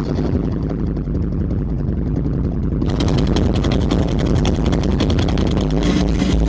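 Live heavy rock band heard from the crowd: a loud low rumble from the amplified band under a fast, steady drum beat, with cymbals coming in about three seconds in.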